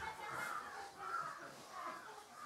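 A bird calling faintly, about three short calls roughly two-thirds of a second apart.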